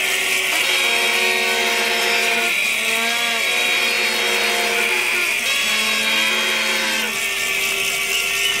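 A melody of held pitched notes, each lasting about half a second to a second, some gliding up and then down in pitch, over a steady high hum.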